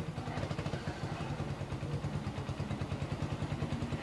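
A low, steady mechanical hum that pulses rapidly and evenly, like a small motor running.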